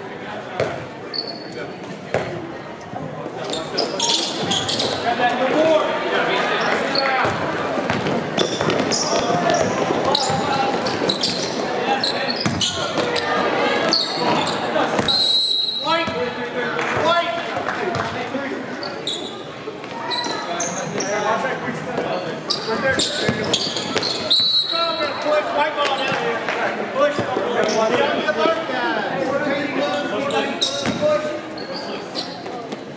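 Basketball game sounds in a gym: a ball bouncing on the court floor, short sneaker squeaks, and players and spectators shouting and talking throughout.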